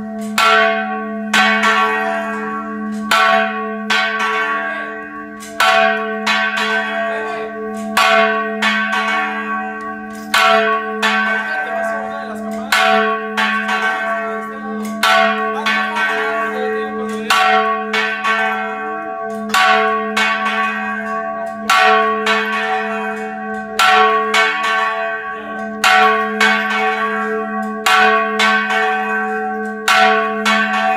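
Church bells of the Basílica de Zapopan rung by clappers pulled on ropes, in a Mexican repique de pino. A fresh stroke comes every one and a half to two seconds over the continuous low hum of the large bell, and the bell tones ring on between strokes.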